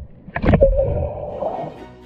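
A splash of someone jumping into a swimming pool about half a second in, picked up by a half-submerged camera, followed by a muffled underwater rushing gurgle. Music comes in near the end.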